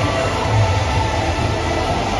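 Loud music playing over a stadium's sound system, with a steady dense wash of noise underneath.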